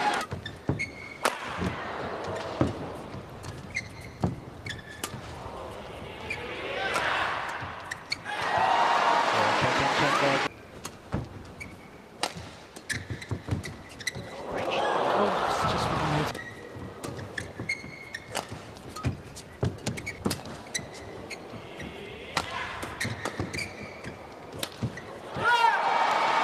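Badminton rallies: sharp racket strikes on the shuttlecock and short shoe squeaks on the court. Between rallies the arena crowd cheers and applauds, in swells after points about a third of the way in, past the middle, and again at the end.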